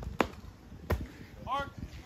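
Long jump: the takeoff foot strikes the board with a sharp slap, and under a second later comes a heavier thud as the jumper lands in the sand pit. A short distant shout follows.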